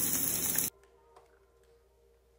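Fish fillets sizzling in oil in a nonstick frying pan, an even hiss that cuts off abruptly under a second in, leaving near silence.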